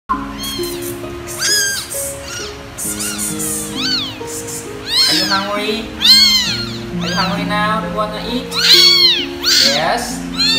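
Several young kittens meowing over and over, high arching cries that rise and fall and overlap, loudest about six and nine seconds in: hungry kittens crying to be fed. Soft background music with long held notes plays underneath.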